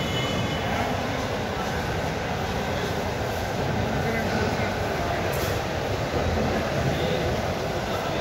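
Steady background hubbub of a busy indoor market hall: a low, even rumble with indistinct voices in it.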